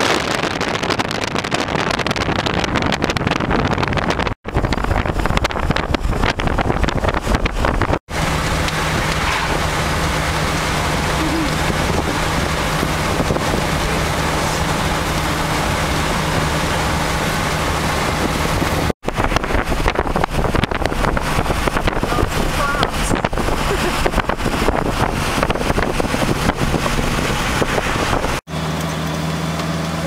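A 1934 Packard driving at road speed, heard from inside the car: wind and road noise over a steady engine hum. The sound cuts out briefly four times between clips, and the hum is clearest in the middle and at the end.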